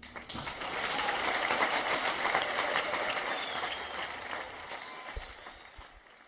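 Concert audience applauding after the song ends: a dense patter of clapping that starts just after the final note, holds, then thins and fades out near the end.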